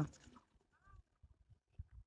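A man's speech breaks off at the start, then faint quiet ambience with a few soft taps and one brief faint chirp-like sound.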